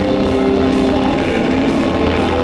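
Rock band playing live through a PA, with distorted guitar and bass sustaining heavy chords that change every half second or so over drums, picked up loudly by a camcorder microphone.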